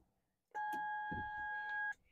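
Gate entry keypad giving one steady electronic beep, about a second and a half long, as the entry code is keyed in.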